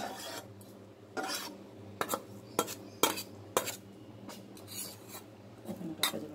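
A metal spatula scraping and clinking against a stainless steel plate in a string of short strokes, over a low steady hum.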